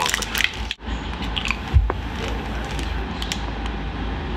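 Plastic candy wrapper crinkling as it is torn open, then, after a sudden break, soft crunching and chewing of a hard fruit-flavoured wafer candy, with one dull thump about two seconds in.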